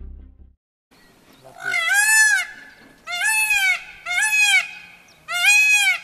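Indian peafowl calling four times in a row, loud pitched calls about a second apart, each rising and then falling in pitch.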